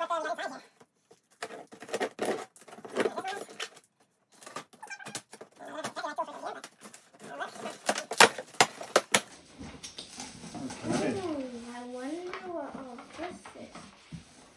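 Packing tape being slit and torn off a cardboard shipping box, a run of sharp rips, clicks and crackles that is loudest about eight seconds in, as the box is opened. It is followed by a long, wavering vocal sound that slides up and down in pitch.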